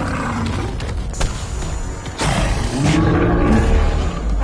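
Cartoon dinosaur roars over background music: a falling growl at the start, then a louder, longer roar from a little after two seconds in.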